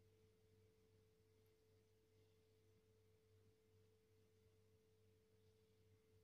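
Near silence: a faint, steady low hum with a thin steady tone above it.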